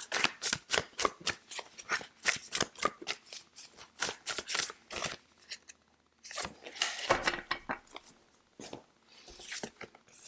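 A Moon Child tarot deck shuffled by hand, the cards sliding and snapping against each other in a quick run of clicks for about five seconds. This is followed by a pause and a few shorter bursts of shuffling near the end.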